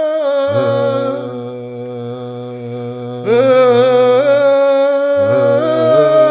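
Slow, meditative vocal music: wordless voices hold long notes that glide from pitch to pitch over a low drone. The drone comes in about half a second in and drops out briefly near the fifth second. The music softens in the middle and swells back suddenly just after three seconds.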